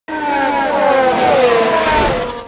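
Race car engine at high revs going by, its note falling steadily in pitch.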